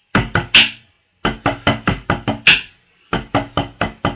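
Drumsticks playing a tenor solo on a multi-pad marching-tenor practice pad: three sharp hits, then fast runs of strokes with short breaks between them.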